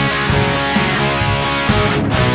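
Rock song in a short passage between sung lines, with electric guitar to the fore.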